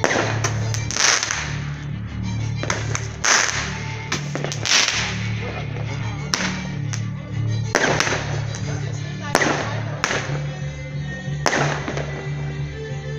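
Fireworks going off: about a dozen sharp bangs and cracks at irregular intervals, each ringing out briefly, over background music with a steady bass line.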